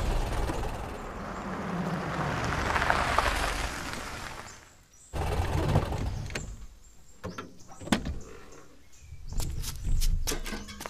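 A car drives past, its noise swelling to a peak and fading away over about five seconds. Then it cuts suddenly to a low engine rumble from the car, broken by a few sharp clicks.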